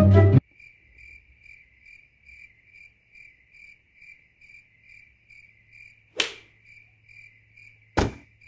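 Cricket chirping as a comedy sound effect: one steady high chirp repeating about twice a second over silence. A sharp click cuts in about six seconds in.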